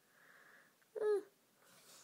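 A person breathing softly near the microphone, with one short voiced hum about a second in, the loudest sound here.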